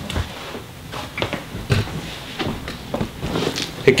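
Footsteps on a carpeted floor and scattered light knocks and rustles as a small tufted rug is picked up and carried.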